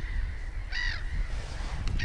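A single harsh, crow-like caw from a bird about a second in, over a steady low rumble.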